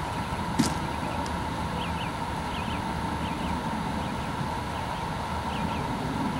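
Steady outdoor background noise with small birds chirping briefly again and again, and a single click about half a second in.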